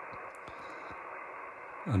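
Yaesu FT-991A transceiver's speaker giving a steady hiss of 80-metre band noise in lower-sideband receive, cut off sharply at the top by the SSB filter, as the receiver is tuned slowly across the band. With the local mains power off, no local interference is heard, only the band's background noise.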